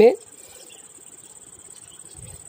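Crickets chirring in a steady, high, even trill, after the last word of a man's speech right at the start.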